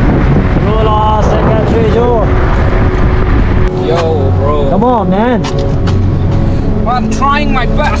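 Steady car and road noise from a car driving alongside cyclists, with wind on the microphone. Over it, voices call out in many short rising-and-falling cries, bunched about a second in, around five seconds in, and near the end.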